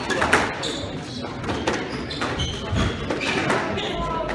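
Squash rally: the ball is struck by racquets and hits the court walls and floor in sharp, irregular knocks, with sneakers squeaking on the hardwood court floor.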